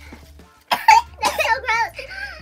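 A young woman coughs sharply about two-thirds of a second in, then makes a second of wavering, strained vocal sounds, reacting to a foul-tasting jelly bean.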